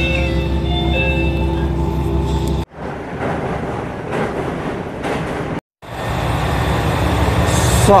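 Train interior noise as a train rolls slowly into a station: a steady low rumble with several faint whining tones, which breaks off abruptly about two and a half seconds in. A quieter, rougher stretch of noise follows, with a brief silent gap near the end before the noise rises again.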